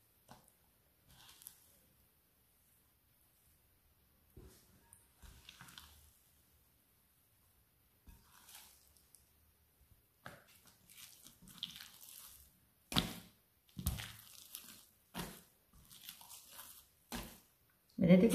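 Very wet, high-hydration dough being stretched and folded by a damp hand in a glass bowl: soft, sticky squelches and slaps, sparse at first, then more frequent in the second half, with a couple of sharper slaps.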